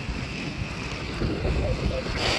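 Wind buffeting a phone's microphone as it moves outdoors: a steady rushing noise with a heavy low rumble.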